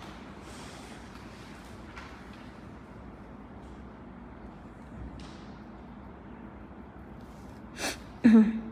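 Quiet room tone with a few soft breaths close to the microphone, then one short, sharp click near the end as the liner brush touches the glass gel dish.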